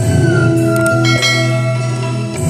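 A whistled melody into a microphone: clear high notes, one sliding slightly down early in the phrase, with higher notes joining about halfway through. Live band accompaniment plays underneath.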